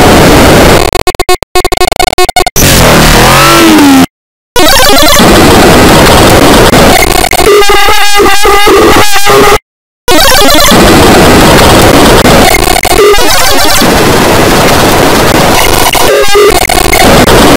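Harsh, heavily distorted and clipped audio effect at full volume: a dense wall of noise with choppy stuttering cuts, a warbling pitch sweep, and two short drops to total silence, about four and nine and a half seconds in.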